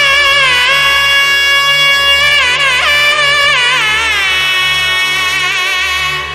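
A nadaswaram plays a Carnatic melody in long held notes with wavering pitch ornaments over a steady low drone. The line climbs to a higher phrase midway and eases off near the end.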